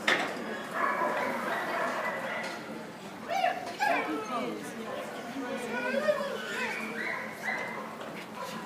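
Dogs barking and yelping now and then over the chatter of people.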